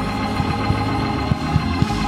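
Church organ holding a steady sustained chord, with a few short low thumps underneath about halfway through and near the end.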